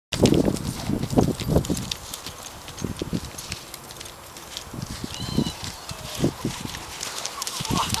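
Dull hoofbeats of a cantering American Saddlebred horse on grass: a quick run of loud thuds in the first two seconds, then fewer and fainter thuds as it moves away.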